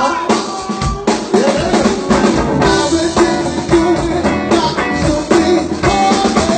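Live band playing an instrumental groove, the drum kit prominent with kick drum, snare and rimshots, over electric guitar and keyboard.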